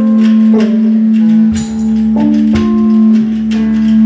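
Live blues instrumental passage: a hollow-body electric guitar played through a small amp, picking notes over a steady held low note, with regular tambourine and drum hits keeping the beat.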